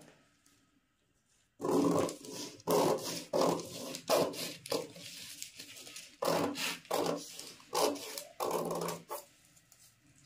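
Scissors cutting through two layers of printed cloth: about a dozen short cuts in quick succession, starting about a second and a half in, with a brief gap midway.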